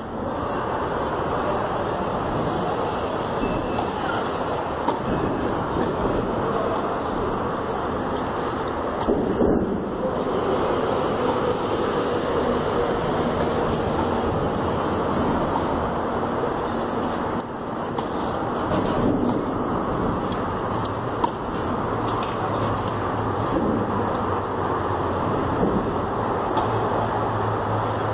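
Steady city traffic noise, with a few faint sharp knocks of a tennis ball being struck during a rally.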